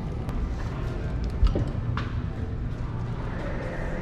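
Footsteps and handling rumble from a hand-held camera being carried at a walk, with a few sharp clicks.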